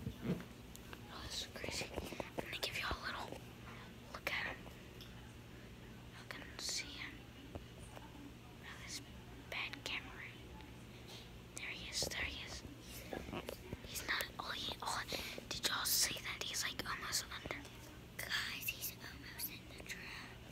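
A person whispering in short bursts on and off, over a faint steady low hum.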